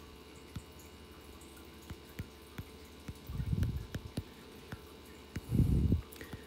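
Stylus tapping and sliding on an iPad's glass screen during handwriting: scattered faint clicks, with two short low rumbles, one in the middle and one near the end, over a faint steady hum.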